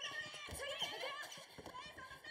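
Faint sound of an anime girls' basketball practice in a gym: players calling out "defend, defend", with scattered quick squeaks and knocks from the ball and shoes on the court floor.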